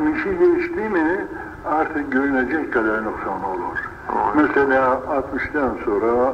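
A man speaking steadily in a religious lecture. His voice sounds muffled and thin, with little high end.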